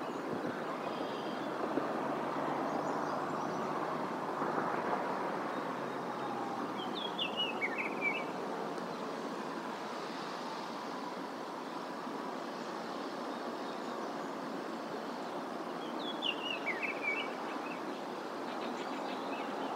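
Steady outdoor rushing background noise, with a small songbird singing two short, descending chirpy phrases, about seven seconds in and again near the end.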